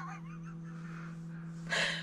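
A woman's giggle trailing off, then a short sharp intake of breath near the end, over a steady low hum.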